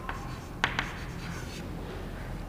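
Chalk writing on a chalkboard: a word is written in short scratching strokes, with a few sharp taps of the chalk, two of them just after half a second in.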